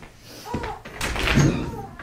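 A house door being unlatched and opened: a sharp click, then a knock, then a louder clatter about a second in.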